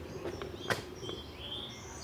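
Quiet outdoor background with a few short, high bird chirps in the second half and a thin whistle just before the end, plus a single sharp click a little after half a second in.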